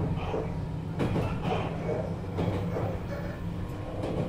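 Running sound inside a 413 series EMU motor car (MoHa 412-7, with MT54 traction motors): a steady low rumble from the motors and the wheels on the rails, with a sharp knock about a second in.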